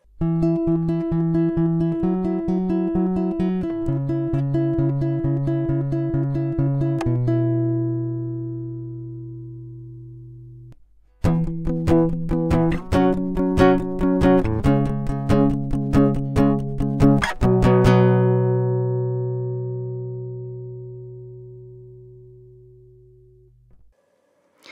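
A dry acoustic guitar recording with no effects: two phrases of quickly repeated picked chords, each ending on a chord left to ring and fade away, with a short break between them about eleven seconds in.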